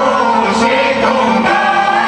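A choir singing a Romanian Christmas carol (colindă), with the voices holding long notes together.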